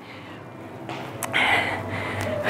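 A woman's hard breath out, starting about a second in, from the effort of a dumbbell forward lunge.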